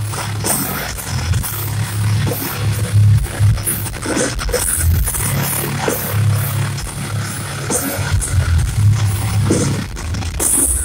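Live metal band playing loudly through a big PA, with heavy, pulsing low guitar and bass notes, heard from within the crowd.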